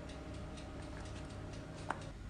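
Thick custard being stirred with a silicone spatula in a saucepan on a glass-top hob: faint small ticks over a steady faint hum. Near the end there is a single sharp click as the pan is lifted off the hob, and the hum stops.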